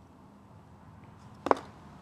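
A single short, sharp tap about one and a half seconds in, over faint room tone.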